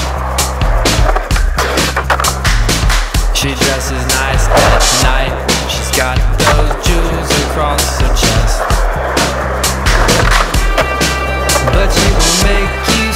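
An indie-pop song with singing and a steady beat, mixed over a skateboard's wheels rolling on concrete and the clacks of the board during tricks.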